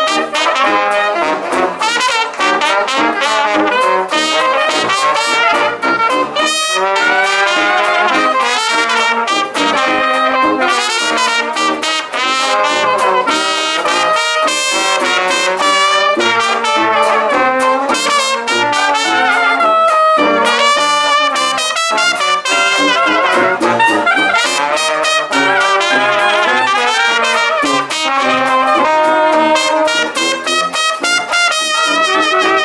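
Traditional jazz band playing an instrumental ensemble chorus: trumpet, trombone and soprano saxophone weaving melody lines over tuba bass, banjo and washboard keeping the beat.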